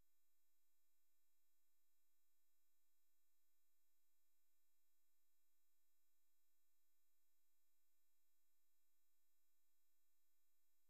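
Near silence, with only a faint steady electronic tone from the recording's noise floor.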